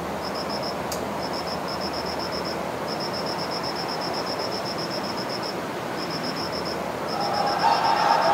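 Steady outdoor night ambience hiss with a cricket chirping in quick high-pitched trains that start and stop. Near the end, music fades in.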